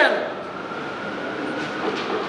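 Steady background noise with a faint, even high tone running under it, left as the voice dies away in the large room.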